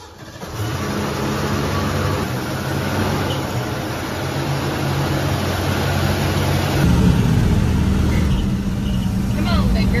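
The 1973 Ford F100's 302 Windsor V8 running at low speed as the truck rolls into the shop, a steady low drone. It swells in the first second and gets louder about seven seconds in.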